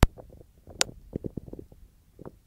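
A sharp click, a second sharp click about 0.8 s later, then a string of light knocks and taps from handling the test leads at a 24 V solenoid valve manifold.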